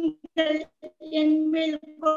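A solo high voice singing held, steady notes, with short breaks between phrases.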